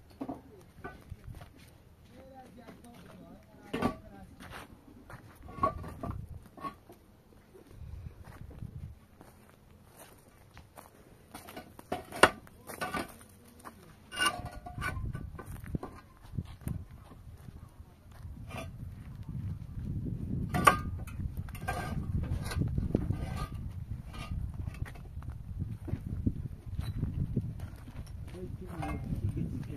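Hollow concrete blocks being handled and stacked, sharp irregular knocks of block set down on block. A low rumbling noise runs under the second half.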